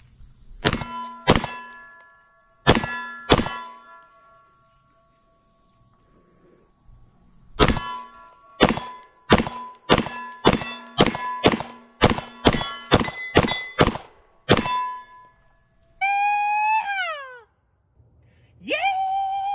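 Springfield Prodigy 1911 DS pistol firing at steel targets, each shot followed by the ring of the struck steel plates. There are four shots in the first few seconds, a pause of about four seconds, then a fast string of about fifteen shots at roughly two a second. Near the end, a man's drawn-out shout falls in pitch.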